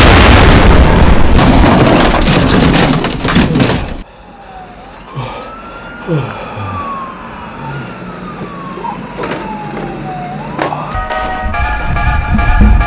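Dozens of firecrackers going off inside a small steel safe as a dense, loud crackle of bangs that stops abruptly about four seconds in. A quieter, slow wailing tone then rises and falls a few times, and music starts near the end.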